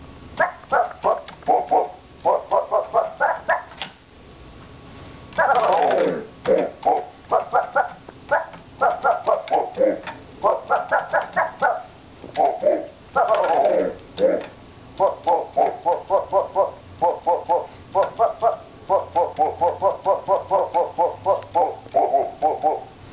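Casio SK-1 sampling keyboard playing back a sampled human-voiced "woof" as a paw is pressed on its keys: quick runs of short notes at changing pitches, several a second, with now and then a longer note that falls in pitch.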